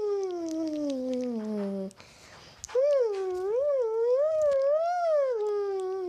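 A voice making long wordless wailing calls: one tone that slides downward, then after a short pause a longer one that wavers up and down several times before falling away.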